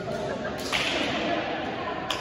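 A single sharp slap about two-thirds of a second in, ringing briefly in the large gym hall, over the murmur of players' voices.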